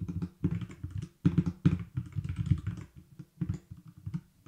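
Typing on a computer keyboard: quick clusters of keystrokes with short pauses between them, thinning out near the end.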